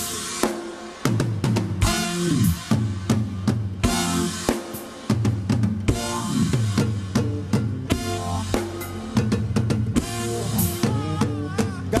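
Live konpa band playing an instrumental passage, with the drum kit's kick and snare hits and a deep bass line carrying the groove.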